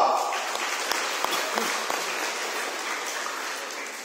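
Group of people applauding in a gymnasium, the clapping dying away over a few seconds.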